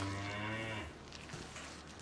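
A cow mooing: one long, low, steady call that ends about a second in.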